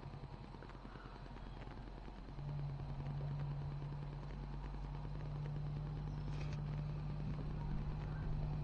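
A motor running steadily as a low hum, growing louder about two and a half seconds in and then holding even.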